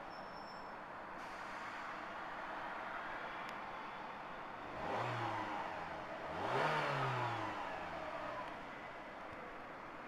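Renault Mégane Scénic engine idling, heard from inside the cabin, and revved twice: two short rises and falls in engine pitch about a second and a half apart, the second longer and louder.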